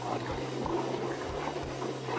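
In-cabin noise of a Jeep Wrangler JL driving a trail in two-wheel drive: a steady low engine drone under tyre and road noise, with a few light knocks from the body and suspension over bumps.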